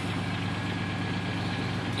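Car engine idling steadily on a freshly replaced fuel pump, running evenly.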